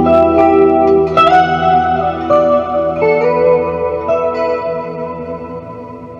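Ibanez Prestige RG1550 electric guitar played with a clean tone through a Carvin Legacy VL100 tube amp: a quick run of picked notes, then single notes and chords left to ring. The playing grows steadily quieter over the last few seconds as the notes die away.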